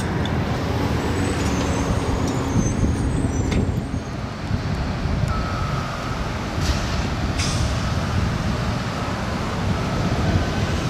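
City transit buses running on compressed natural gas, with a steady low engine rumble and traffic. A steady engine whine sounds over the first three seconds, and two short hisses of the air brakes come about two-thirds of the way through as a bus approaches.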